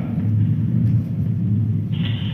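A steady low rumble of background noise in a lecture hall, with no distinct events on top of it.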